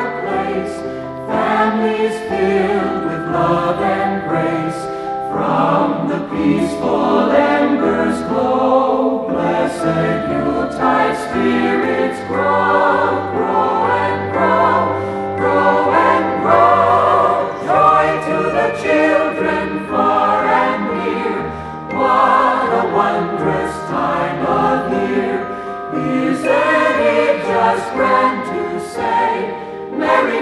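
A choir singing a Christmas song with instrumental backing.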